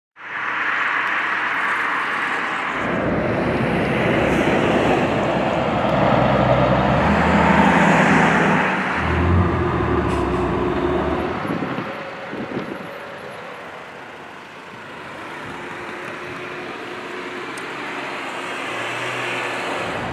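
Road traffic passing on a highway: vehicles driving by close at speed, loudest through the first half and quieter from about twelve seconds in.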